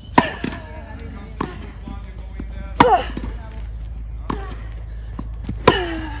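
Tennis balls struck by racquets in a rally, five hits about a second and a half apart, alternating louder near strokes and fainter far ones. Each loud near stroke comes with a short falling grunt from the hitter.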